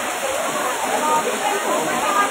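Heavy rain falling as a steady hiss, with many voices talking at once.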